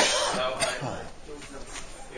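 A person coughing close to the microphone: one loud, abrupt cough that trails off within about a second, over the low chatter of a room.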